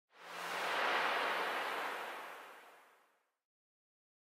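A whoosh sound effect for a logo intro: a rush of noise like wind or surf that swells up over about a second, then fades away and is gone about three seconds in.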